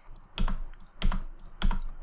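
Three keystrokes on a computer keyboard, sharp single presses about half a second apart.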